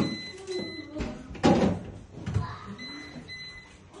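Plastic drawers and shelves of a built-in upright freezer being handled. There is a knock at the start, another about a second in, and a louder rattling scrape about a second and a half in. The freezer's alarm sounds in short high-pitched beeps, a pair at the start and another pair near the end.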